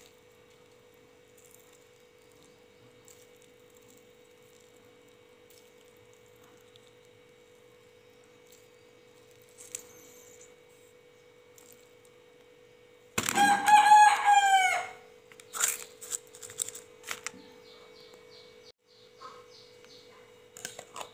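A rooster crows once, about 13 seconds in: a loud call of about two seconds, the loudest sound here. Otherwise there is only a faint steady hum and a few small clicks.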